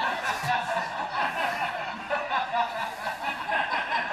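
Audience laughing, a dense, rising-and-falling mass of chuckles and laughter.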